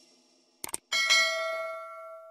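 Subscribe-animation sound effect: two quick mouse clicks, then a single bell chime that starts about a second in and slowly fades.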